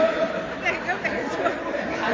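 Men's voices talking over each other, with chatter from the audience.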